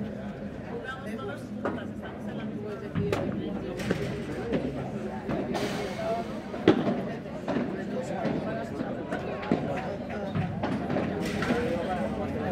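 A padel rally: sharp pops of the ball struck by solid padel rackets and bouncing on the court, roughly one a second, the loudest about two-thirds of the way through, over a steady background of voices.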